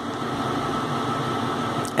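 Steady background noise: an even hiss of room noise with a faint steady hum.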